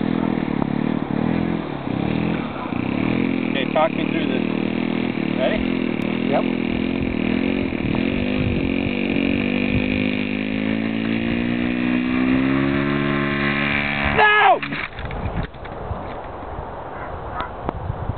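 Radio-controlled Hawker Sea Fury model's engine running steadily, then throttled up with a rising pitch for the takeoff roll. About fourteen seconds in there is a brief loud burst and the engine cuts off abruptly as the model crashes on takeoff, which the owner puts down to too little speed.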